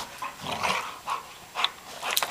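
Two dogs, a Labrador retriever and a Rhodesian Ridgeback mix, rough-playing over a ball and making short growls and grunts, four or five quick bursts in a row.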